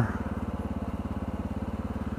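Motorcycle engine running steadily at cruising speed, its exhaust note an even, rapid pulse.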